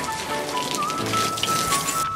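Garden hose spraying water onto the metal body and windshield of a short school bus: a steady hiss and patter of water, over background music.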